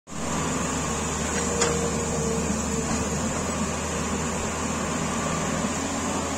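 Tata Hitachi 210 Super crawler excavator's diesel engine running steadily while it digs landslide rubble, with a single sharp knock about one and a half seconds in.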